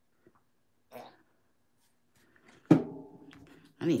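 A nearly empty squeeze bottle of gold acrylic paint being squeezed, making a squirty noise: a sudden loud, buzzing sputter about two and a half seconds in that lasts about a second. The bottle is running low on paint, so it spits air along with the paint.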